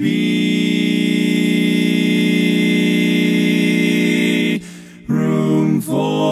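Four-part barbershop harmony sung a cappella in just intonation. The lead is held at tempered pitch, and the other voices are sharpened by 31 cents on the lead's flat sevenths so the chords ring without the quartet drifting flat. One long held chord is followed by a short break about four and a half seconds in, and then the next chord begins.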